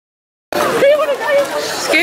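Silence for the first half second, then people's voices talking, with one high-pitched voice standing out.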